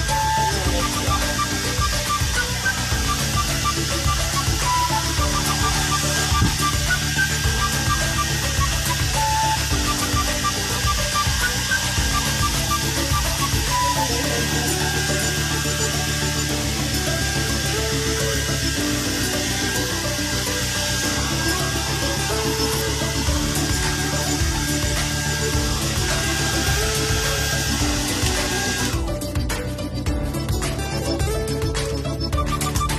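White handheld hair dryer running steadily under background music, cutting off near the end.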